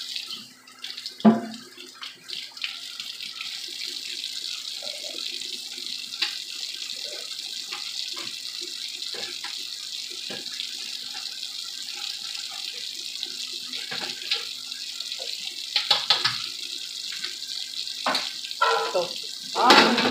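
Large stainless stockpot of seafood-boil water at a steady rolling boil, a continuous hiss with a low hum under it. There are a few light knocks, and a louder metal clatter near the end as the lid is set on the pot.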